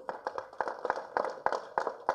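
Scattered hand clapping from an audience: a short round of applause made of many separate claps.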